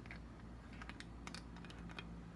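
Faint, scattered light clicks and taps of glass bottles being handled while perfume oil is poured from a large bottle into a small one, over a low steady hum.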